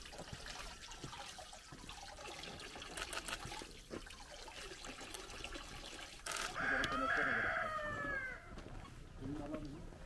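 Water trickles from a stone fountain's spout over a man's hands. About six seconds in, a rooster crows once, a long crow that falls in pitch at the end and is the loudest sound.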